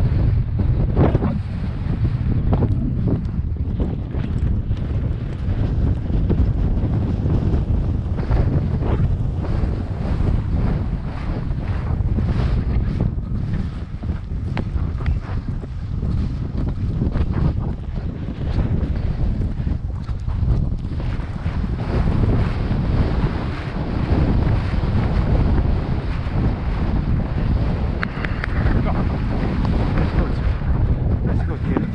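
Loud, steady wind buffeting the microphone of a camera worn by a rider on a moving horse: a low, rushing rumble with irregular gusts and knocks.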